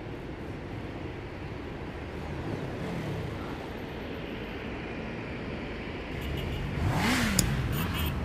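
Car engine running, its revs rising and falling twice. The second rise, about seven seconds in, is the loudest and comes with a rush of noise and a sharp click.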